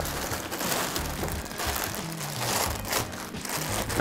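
Plastic packaging crinkling and rustling as items are handled and unwrapped, over background music with a stepping bass line.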